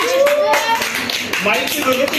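Hand clapping by a few people, irregular claps mixed with several voices talking at once.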